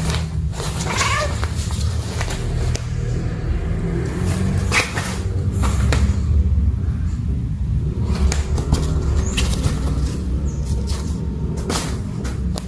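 Kittens playing in a fabric play tunnel: scattered rustles and scrabbling clicks against the tunnel, with a short kitten meow about five seconds in, over a steady low rumble.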